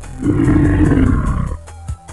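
A monster roar sound effect lasting about a second and a half, dubbed over background music with a regular beat.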